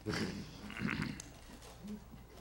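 Brief laughter from people in a meeting room, strongest in the first second and then fading to room noise, with a short vocal sound near the end.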